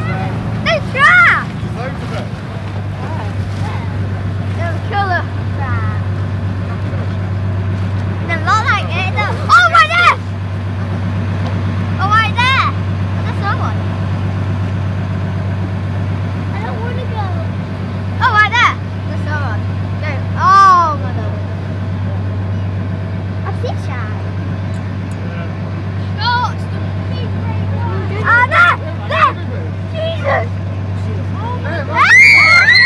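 Speedboat engine running at a steady low drone while the boat cruises slowly. Over it come short, loud calls of people's voices, rising and falling in pitch, several times.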